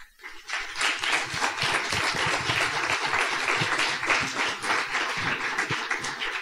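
An audience applauding, many people clapping together in a dense, steady patter that starts a moment after the lecturer's closing thanks.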